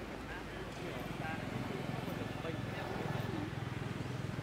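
Indistinct voices of people talking in the background over a low, steady hum.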